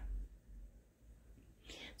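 Quiet pause between spoken sentences: faint low hum, then a soft breath drawn in near the end, just before the voice resumes.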